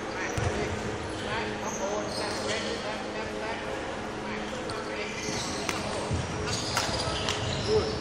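Footwork of a badminton player on a wooden hall floor: a few dull thuds of landing feet and short, high shoe squeaks, echoing in the sports hall.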